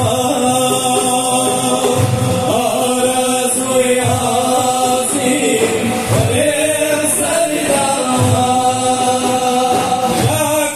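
Sufi devotional chant sung by a group over a large ensemble of daf frame drums. Sustained voices hold long notes while deep drum strokes land about every two seconds.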